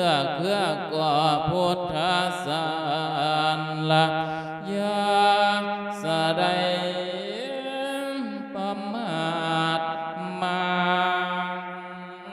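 A Buddhist monk chanting a sermon in the Thai-Lao 'lae' style into a microphone. His voice holds long, drawn-out notes with wavering ornaments and slow slides between pitches, then fades somewhat near the end.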